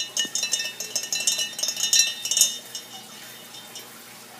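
A magnetic stir bar thrown off its coupling on a Stir-Plate 3000, clattering and clinking irregularly against the bottom of a glass jar of water. The rattling dies away about two and a half seconds in.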